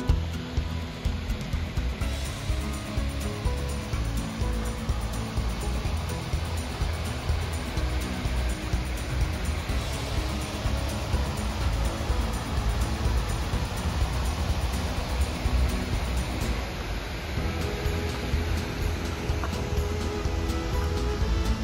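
A creek flowing, with wind buffeting the microphone and faint background music underneath.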